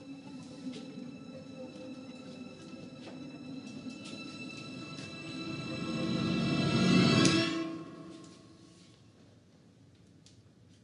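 Horror film suspense music: held eerie tones swell into a rising crescendo that peaks loudly about seven seconds in, then cuts off and dies away to a low hush.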